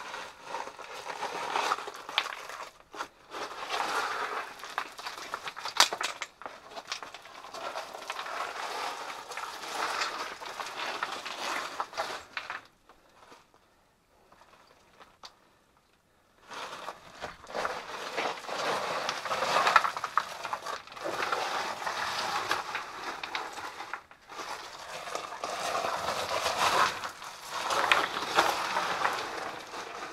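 Footsteps crunching and scraping over loose rock rubble, with stones clicking and clattering underfoot, stopping for a few seconds of near quiet about halfway through.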